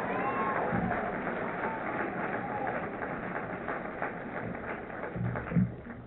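Audience laughing and clapping in reply to the speaker's joke, a dense patter of claps with a few laughing voices near the start, slowly dying away.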